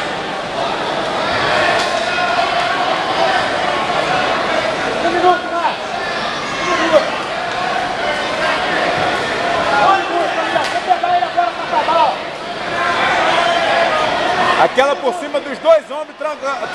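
Many voices of a crowd talking over one another in a large, echoing gymnasium hall, with a single brief knock about seven seconds in.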